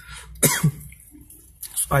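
A man's short cough into his fist, about half a second in.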